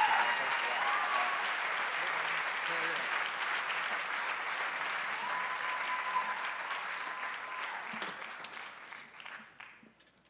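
Live audience applauding at the end of a song, the clapping dying away over the last two seconds.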